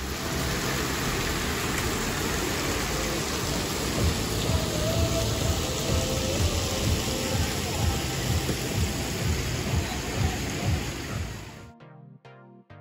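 Outdoor water-park ambience: a loud, steady rush of running and splashing water around the pool and slides, with low irregular rumbles underneath. It cuts off just before the end, giving way to quieter electronic music.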